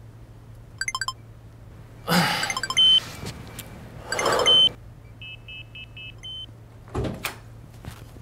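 Electronic keypad door lock beeping as digits are pressed, then two louder noisy bursts each ending in a short beep, and a run of four short beeps: the lock rejecting a wrongly guessed code. A dull thump comes near the end.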